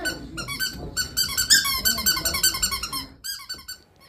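A squeaky dog toy squeezed over and over in quick succession during play with a Boston terrier, giving a fast run of short, high-pitched squeaks.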